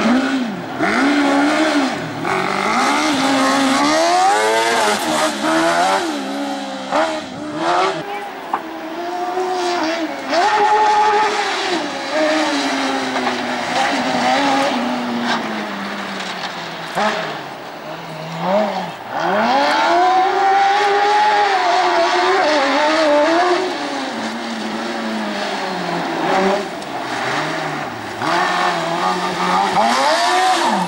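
Small hillclimb race cars' engines revving hard through corners, one car after another. The engine note climbs and falls over and over as the throttle is opened and lifted, with a dip and a fresh climb about two-thirds of the way through.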